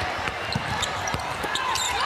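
Basketball dribbled on a hardwood court, a run of short bounces over steady arena background noise.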